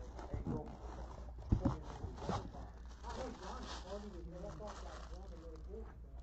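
Cardboard box and packaging being handled: a few short knocks and rustles in the first couple of seconds, with quiet talk in the background after that.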